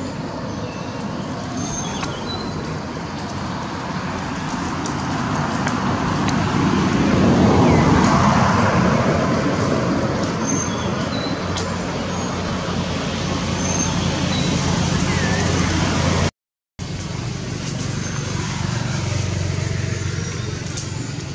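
Motor traffic passing nearby: a steady rush of road noise with a low engine hum, swelling loudest about eight seconds in as a vehicle goes by and then easing off. The sound cuts out for half a second about sixteen seconds in, and a few faint short high chirps sound over it.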